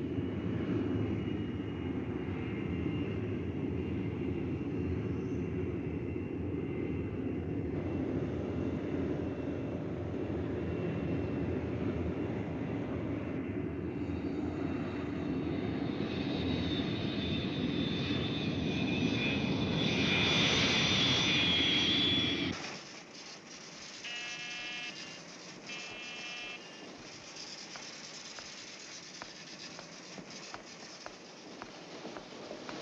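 Jet engines of a B-52 bomber at takeoff, a steady loud roar with a high whine that grows louder in its second half, cutting off suddenly about two-thirds of the way through. Then a quieter room with faint machine ticking and two short rings of a telephone buzzer.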